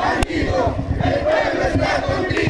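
Crowd of marchers shouting and chanting, many voices overlapping, with a brief sharp click about a quarter second in.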